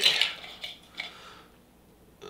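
Metallic rattling and clinking of a Funko Soda can being shaken and handled, trailing off over the first second or so, with a couple of light clicks about a second in.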